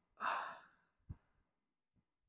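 A woman's sigh: one short breathy exhale that fades out within about half a second, followed about a second in by a faint, soft low thump.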